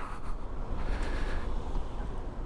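Steady low rumble of wind and road noise from an electric motorcycle riding slowly between queued cars. There is no motor whir: the bike's electric drive is silent.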